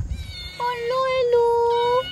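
Small tabby kitten meowing: one long, drawn-out cry through the second half, after a brief low rumble near the start.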